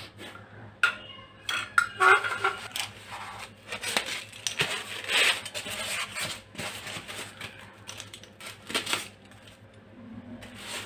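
Unboxing handling noise: light metallic clinks and knocks from a metal wall-lamp arm being moved on a tiled floor, then polystyrene packing blocks being pulled about and rubbed together. It comes as an irregular run of clicks and scratchy rubs, loudest about two seconds in.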